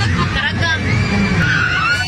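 Voices of people riding a swinging pirate-ship carnival ride, with drawn-out shouts and squeals over a steady low rumble.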